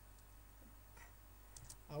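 Near silence: faint room tone with a few soft clicks, and a voice starting right at the end.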